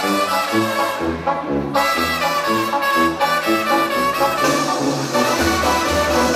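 Recorded backing track of a Mexican song playing an instrumental break between sung verses, led by brass over a walking bass line, with no singing.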